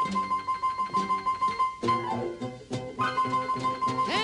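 Blues band playing an instrumental passage without vocals: plucked guitar and upright bass keep a quick, even beat under a high note repeated on every beat.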